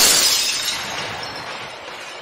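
Glass-shattering sound effect: a crash just as it begins, then the scattering debris and ringing fading steadily away.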